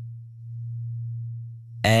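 A steady low sine-like drone tone under the lesson, swelling and fading in loudness about once a second. A woman's voice begins speaking near the end.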